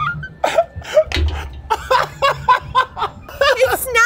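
A man and a woman laughing together, in short choppy bursts.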